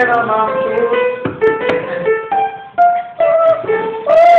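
A simple melody played on a musical instrument: single notes one after another, each held briefly, stepping up and down in pitch, with a short pause about three seconds in.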